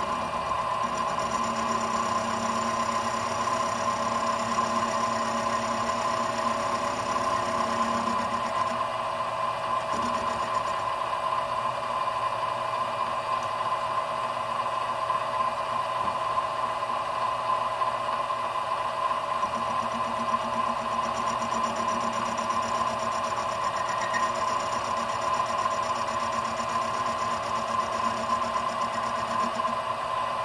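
Benchtop milling machine running with a steady whine while its end mill cuts into the corner of a speed square turned on a rotary table. The rough cutting rattle beneath the whine comes and goes, strongest in the first several seconds and again in the last third.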